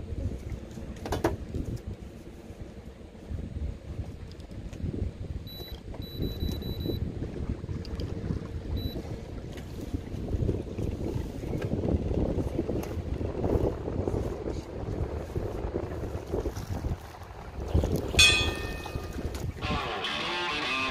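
Wind rushing on the microphone out on open water, with scattered knocks and clicks on the boat, a brief high electronic beep pattern about a third of the way in, and a short bright rattle near the end.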